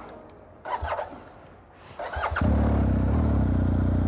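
A motorcycle engine, the BMW R 1250 GS boxer twin, is started: a brief squeak about a second in, then the engine catches about two and a half seconds in and settles into a steady idle.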